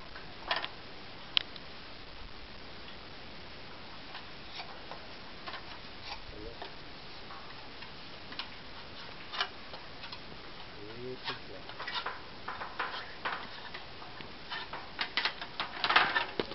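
Scattered light knocks and clicks of a person climbing down a stepladder, feet and hands on the rungs, coming more often in the last few seconds.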